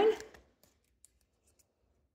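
A woman's voice trailing off at the start, then near silence: room tone with one faint click about a second in.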